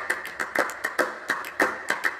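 Hands clapping and slapping together in a quick, uneven rhythm of about five or six sharp strokes a second, as two people run through a hand-clapping routine.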